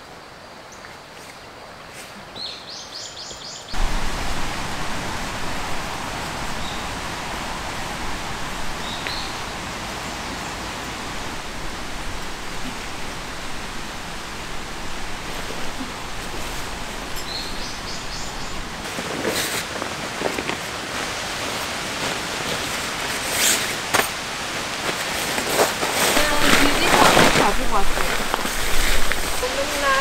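A valley stream running steadily, coming in abruptly about four seconds in after a quiet stretch with a few bird chirps. Near the end, bursts of rustling and crinkling as the orange DD tarp is unpacked and spread out.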